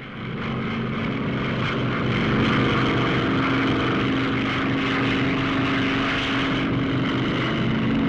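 Westland Wasp helicopter running steadily, a turbine and rotor rush with a steady droning hum that swells over the first two seconds and then holds.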